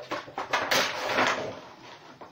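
Cardboard and plastic rustling and scraping as a Funko Pop vinyl figure is pulled out of its window box, loudest in the middle and fading toward the end.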